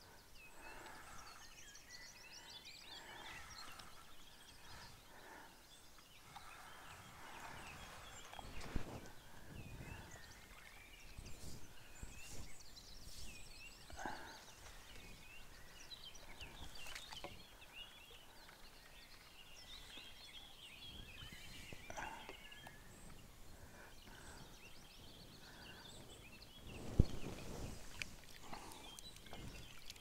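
Songbirds singing faintly, many short chirps and trills overlapping throughout, with a few soft knocks and a louder knock and rustle near the end.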